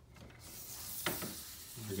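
Telescoping Targus monopod arm being released and moved by hand, a mechanical sliding rustle that grows louder, with one click about a second in.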